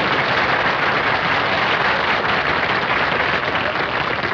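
Studio audience applauding, a dense, steady clapping of many hands.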